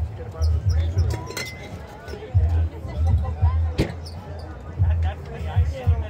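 Background talk from a group of people, with music underneath and a series of low thuds. A couple of sharp clicks stand out, one early on and one near the middle.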